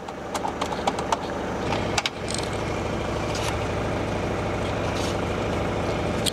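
Mercedes 240GD's four-cylinder diesel engine idling with a steady drone, heard from the cabin. In the first two seconds a few sharp plastic clicks come as the car phone handset is pulled from its dash cradle.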